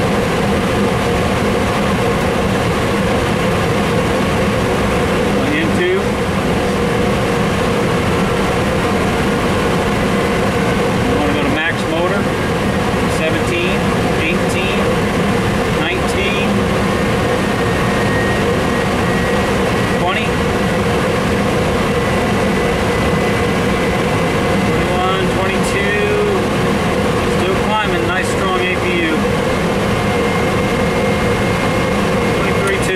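Steady cockpit drone of an A300-600 as its number-one GE CF6 turbofan is being started off the APU. A thin high whine comes in about twelve seconds in and creeps slowly upward as the engine spools up.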